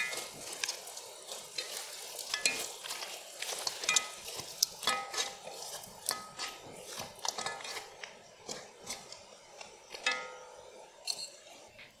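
Cola-braised pork ribs being stirred in a frying pan as the sauce cooks down to a glaze. A metal utensil clinks and scrapes against the pan in irregular clicks, over a light sizzle.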